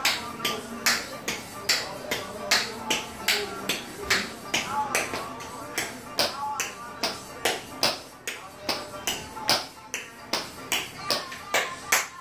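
Tap shoes striking a tile floor in quick, uneven runs of sharp taps, several a second, over a recorded song with vocals.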